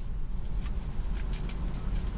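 Small sharp clicks from a plastic cosmetics package being handled after it has just been opened, over a steady low rumble in a car's cabin.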